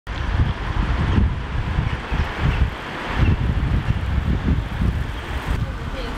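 Wind buffeting the microphone in irregular gusts over the steady hiss of passing city traffic.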